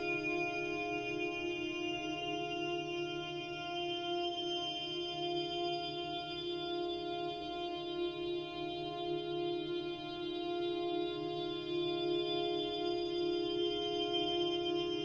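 Slow ambient music: a dense drone of many held tones that stays steady, swelling slightly louder in the last few seconds.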